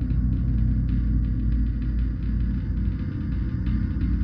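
Dark ambient drone built from an electronically processed gong: a deep, steady rumble with its weight in the low bass and a faint shimmering texture above, with no distinct strikes.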